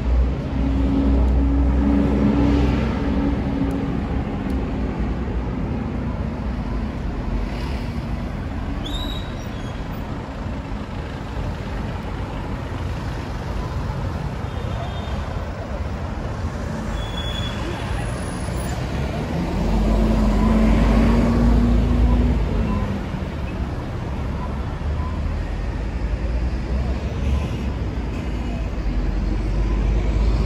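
City street traffic: cars and buses running past with a steady low rumble, a heavy vehicle's engine hum loudest near the start and again about twenty seconds in.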